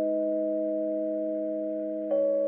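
Slowed-down, reverb-heavy pop song intro: one soft chord of pure-sounding tones held and slowly fading, with no singing.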